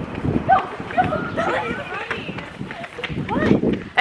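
Running footsteps slapping on a paved street, with excited voices calling out over them.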